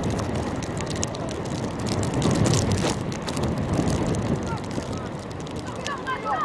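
Outdoor football-pitch ambience: a steady low rumble, typical of wind on the microphone, under distant indistinct shouts of players and spectators, with scattered sharp knocks such as a ball being kicked.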